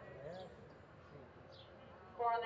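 Near silence: faint arena room tone with a brief faint distant voice early on and a couple of faint high chirps.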